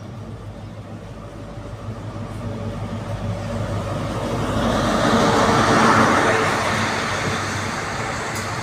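A GWR High Speed Train's Class 43 diesel power car arriving at a platform, its engine hum and wheel-on-rail noise growing louder as it approaches, loudest about five to six seconds in as the power car passes. The coaches then roll by with a steady, slightly fading rumble.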